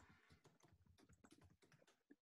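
Faint typing on a computer keyboard, a quick irregular run of keystrokes, several a second, as a sentence is typed.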